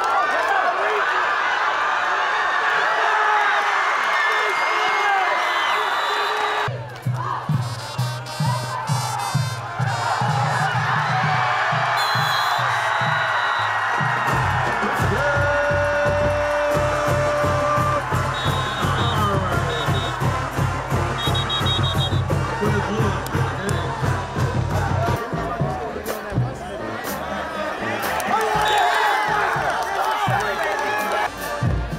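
Football crowd cheering and shouting. About seven seconds in, music with a steady drum beat starts and carries on beneath the crowd, growing heavier in the bass about halfway through.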